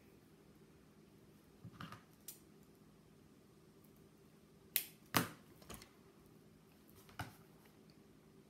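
A few sharp clicks and snips from scissors cutting a strand of craft pearls, with small knocks of tools being handled; the loudest two come about five seconds in.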